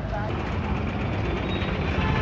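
Street traffic: a steady low engine rumble from passing motor vehicles, with a faint voice briefly near the start.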